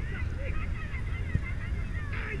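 Many short, high honking calls from a flock of geese in the distance, over a steady low rumble.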